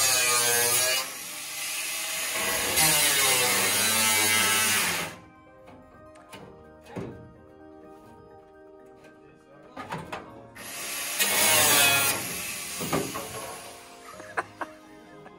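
Angle grinder cutting into the sheet-steel body of a stripped car shell, its pitch dipping as it loads into the metal: about five seconds of cutting with a short drop after the first second, then it stops. A few knocks follow, and a second burst of cutting comes about eleven seconds in.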